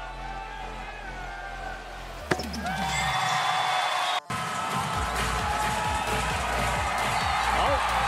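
Basketball arena sound: music playing over crowd noise, with a sharp knock about two seconds in. It grows louder after a brief dropout in the middle, with the crowd's voices rising near the end as the game clock runs out.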